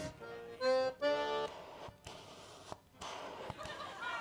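Short reedy notes, accordion-like: a brief chord, then a held note and a buzzy sustained tone within the first second and a half, standing in for the one sound the hospitalised uncle in the song can make. Then a low, noisy murmur of the hall.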